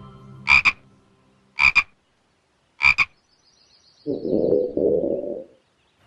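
Cartoon frog sound effect: three short croaks about a second apart, followed by a longer, lower sound lasting about a second and a half.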